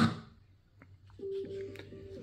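Music from a Gradiente GST-107 tower speaker cuts off abruptly as the track is changed; after a short near-silent gap with a couple of faint clicks, the next track starts quietly with a pair of held tones.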